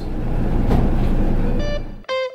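Steady low running noise of a twin-diesel motor yacht underway, heard from the helm. It fades out near the end as a plucked guitar note comes in.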